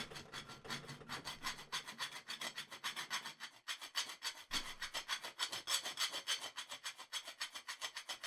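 Hand file rasping the cutaways on the fire selector of a Tippmann M4 airsoft rifle in quick, even back-and-forth strokes, with a brief pause a little before halfway. The filing opens up the detent cutaways to give the selector clearance so it moves freely.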